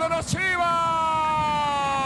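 A Spanish-language TV football commentator's long drawn-out "gol" call: one held, shouted note that breaks briefly for breath about a third of a second in, then is held again with its pitch slowly falling.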